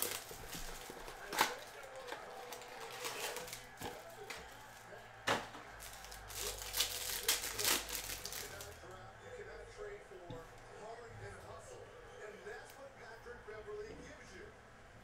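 Plastic trading-card pack wrapper crinkling and tearing open by hand, with a sharp crackle a little over a second in, another about five seconds in, and a dense stretch of crinkling from about six to eight and a half seconds.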